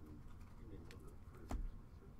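Trading cards handled and slid across one another in the hands, with a light click a little under a second in and a louder tap about halfway through, just after it.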